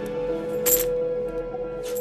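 Clinks of coins dropping, twice: once a little under a second in and again near the end, over steady background music.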